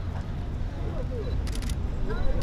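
Camera shutters firing in a rapid burst of clicks about one and a half seconds in, from photographers shooting a posing group.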